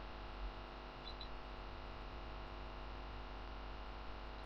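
Steady electrical mains hum with a soft hiss: the recording's background noise between narrated steps.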